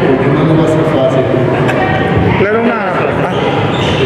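Speech: a man talking into a handheld microphone.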